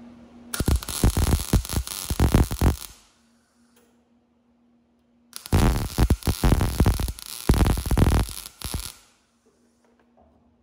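MIG welder arc crackling in two bursts, the first about two and a half seconds long and the second about three and a half, as beads are laid on a steel car frame.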